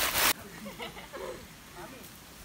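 A loud, noisy rustle that cuts off abruptly about a third of a second in. Then the faint, scattered voices of several people talking further off.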